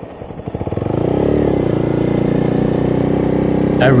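Honda Grom's 125 cc single-cylinder four-stroke engine ticking over at low revs with separate firing beats, then opened up about a second in, the revs rising and holding steady as the bike pulls away.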